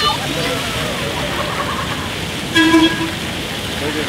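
Splash-pad fountain jets spraying and splashing steadily, with a short, single horn toot of steady pitch about two and a half seconds in.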